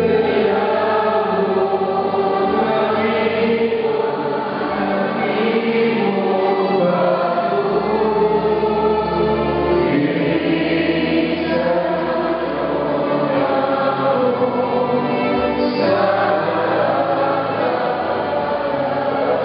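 A congregation singing a hymn together in a church, many voices in unison over sustained low notes.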